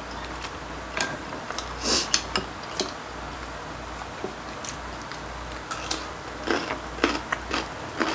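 Metal chopsticks clicking and tapping against ceramic bowls and plates as food is picked up, in scattered single clicks with a few louder brief clatters and eating noises.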